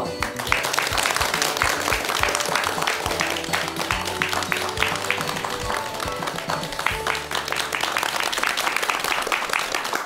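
A studio audience clapping steadily over background music.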